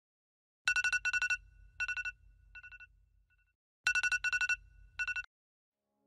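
Smartphone alarm ringing: clusters of quick electronic beeps in two rounds, with a low hum underneath. It cuts off suddenly about five seconds in as the alarm is snoozed.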